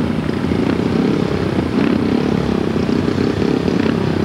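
Four speedway bikes' 500 cc single-cylinder engines running together at the start line, revving up and down in uneven blips as the riders wait for the tapes to go up.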